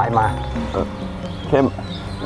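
A man speaking Thai in short phrases over steady, sustained background music.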